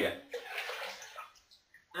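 Sugary rinse water poured from a metal pot into a plastic bucket nearly full of water, splashing in and tapering off about a second and a half in.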